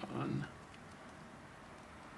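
A brief wordless vocal sound from a person in the first half second, then a few faint small clicks while a soldering iron works a joint on a power supply circuit board.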